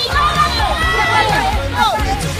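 Children shouting and cheering, several voices at once, with pop music playing underneath.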